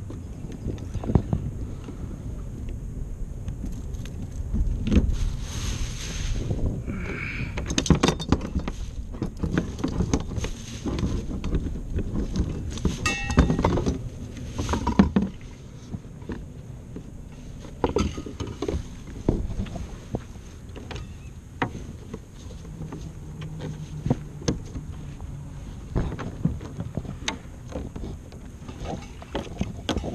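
Wind on the microphone and water moving against a plastic kayak hull, with many short knocks and clatters as gear on the kayak is handled; the knocks come thickest in the first half.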